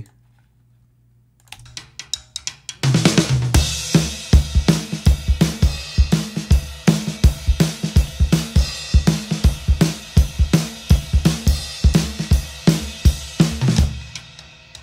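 Multitrack recording of a live acoustic drum kit played back in Pro Tools: kick, snare, hi-hat, toms and crash cymbal in a steady groove, with the tom track cut back by strip silence to trim cymbal and hi-hat bleed. Light ticks come in after about a second and a half of near silence, and the full kit enters about three seconds in.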